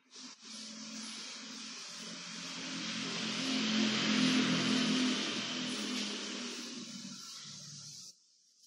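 A cloth duster rubbing across a chalkboard as it is wiped clean: a continuous scraping rub that grows louder toward the middle and stops abruptly at the end.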